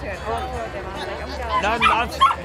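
A dog yipping and barking among people talking, loudest near the end.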